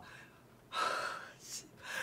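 A person's audible breath, about half a second long, followed by a shorter, fainter puff of breath.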